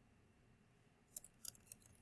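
Computer keyboard keystrokes: a short run of light, quick key clicks about halfway through, as a word is typed, after a near-silent start.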